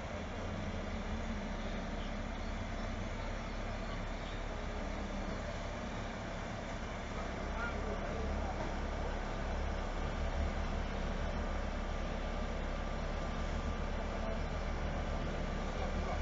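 Heavy diesel engine of a mobile crane running steadily while it lifts a large concrete-and-fibreglass-sized load, a steady low hum that grows a little louder about halfway through.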